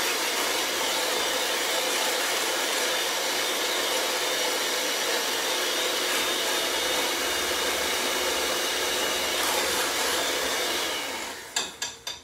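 Electric mixer running steadily while whipping heavy cream. It winds down and stops about a second before the end, followed by a few clinks against the bowl.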